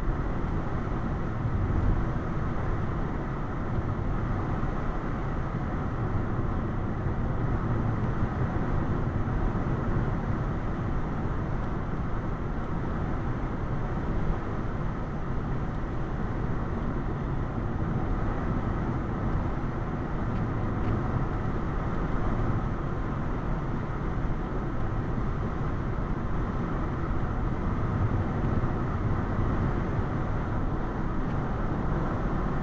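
Car cruising at about 59 mph, heard from inside the cabin: steady, even road and engine noise, deepest in the low range, with no changes or separate sounds.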